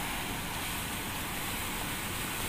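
Steady outdoor background noise with no distinct events: an even hiss and rumble with nothing standing out.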